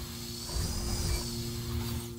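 Electronic logo-sting sound design: a low synth drone with steady held tones over a deep rumble that swells about half a second in, under an airy shimmering sweep that rises and then falls in pitch.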